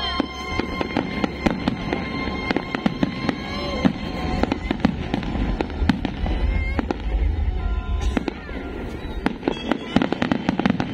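Aerial fireworks bursting in quick succession, a dense run of sharp bangs and crackles, over music played for the display.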